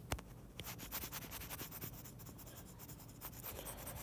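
A stylus tip tapping and stroking on a tablet's glass screen while writing and highlighting: faint, irregular clicks and light scratches.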